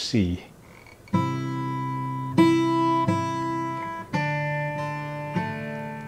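Acoustic guitar fingerpicking a C chord: the low C bass note on the fifth string sounds together with the open first string, then the first string is plucked again, five notes in all about a second apart, each left to ring.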